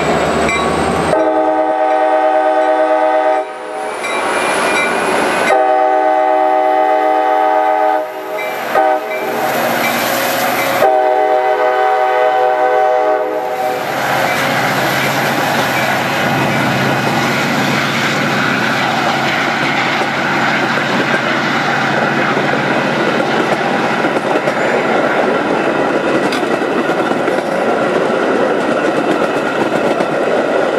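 Metra MP36 diesel locomotive sounding its horn in three long blasts over the first half, each about two and a half seconds. Then the steady rumble of bilevel passenger coaches rolling past on the rails.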